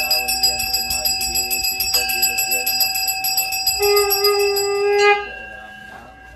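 Hindu prayer hand bell rung rapidly and continuously, with a low voice chanting beneath it; a steady held tone joins near the end, and the ringing stops abruptly a little after five seconds in.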